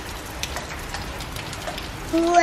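Steady rain falling, an even hiss with scattered sharper drop ticks.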